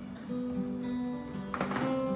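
Two acoustic guitars playing the instrumental opening of a song: sustained picked notes, with a chord strummed about one and a half seconds in.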